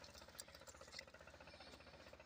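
Near silence: a faint steady low hum with a couple of soft clicks.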